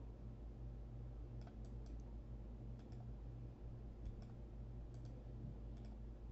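Quiet clicks of a computer mouse, mostly in close pairs, about six times from a second and a half in, over a steady low hum.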